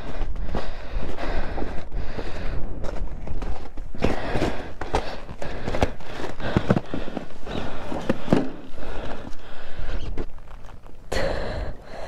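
Footsteps on icy, crusted snow: an irregular run of steps, with a louder burst of noise near the end.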